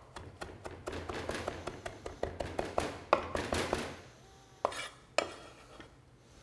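Chef's knife chopping fresh cilantro on a wooden cutting board: a quick run of knife strokes for about four seconds, then two single knocks near the end.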